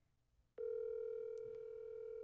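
Telephone ringback tone through a smartphone's speaker: one steady two-second ring beginning about half a second in, the outgoing call ringing unanswered.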